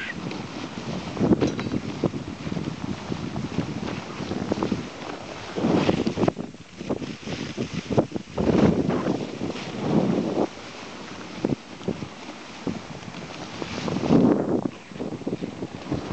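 Wind buffeting the microphone on a moving husky dog sled. It comes in uneven gusts that swell every few seconds.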